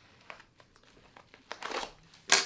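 A plastic poly mailer crinkling as hands handle it: a few soft rustles, then a louder crinkle near the end.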